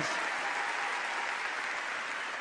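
A large audience in a big hall applauding, a dense even clatter that eases off slightly.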